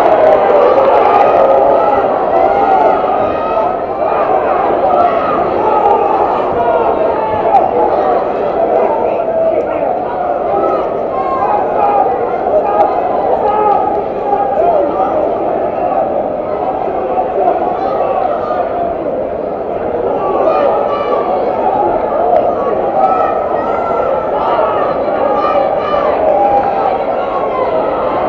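Large crowd of spectators, many voices shouting and talking over one another without a break, a little louder in the first couple of seconds.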